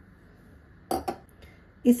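Two quick knocks of tableware about a second in: a drinking glass set down on a hard surface after its rim has been dipped in the spice mixture.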